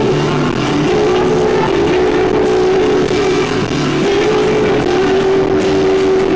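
A live band performing loudly, with an acoustic guitar strummed and a held melodic note that moves to a new pitch a few times, recorded from the audience.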